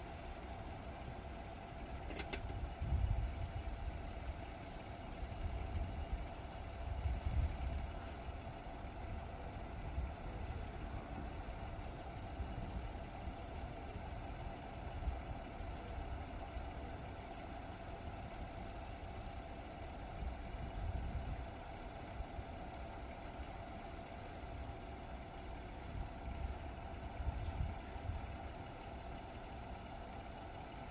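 A road vehicle's engine idling steadily over a faint constant hum, with uneven low rumbles and a single sharp click about two seconds in.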